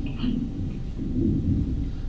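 Handling noise from a handheld microphone being picked up off a table and raised to speak into: a low, uneven rumble.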